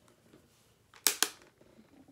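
Two sharp clicks about a fifth of a second apart, about a second in, from makeup items being handled on the table.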